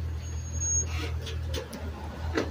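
Small cutaway transit bus's engine running with a steady low rumble as the bus pulls away from the stop. A brief thin high-pitched tone sounds just after the start.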